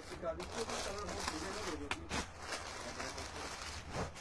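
Faint background talk, with a brief crinkle of plastic packaging being handled about two seconds in.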